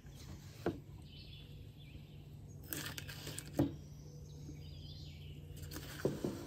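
Scattered light knocks and clicks of a knife and its leather sheath handled on a wooden table while butter is cut, the loudest a bit past the middle, with faint bird chirps in the background.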